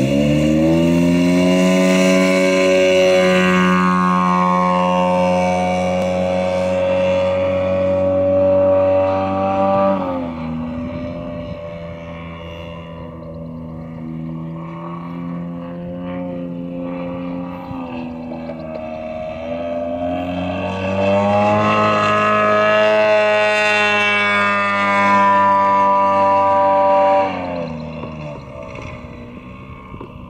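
Radio-controlled scale model airplane's engine throttling up for takeoff and running steadily as the plane climbs away, then fading. It comes back louder from about two-thirds of the way through for a low pass, its pitch dropping sharply as it goes by near the end.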